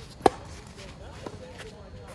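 Tennis racket striking the ball on a forehand groundstroke: one sharp, loud pop about a quarter-second in, followed by a much fainter tap about a second later.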